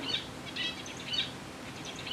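Faint bird chirps, three short high chirps about half a second apart, over a low recording hiss.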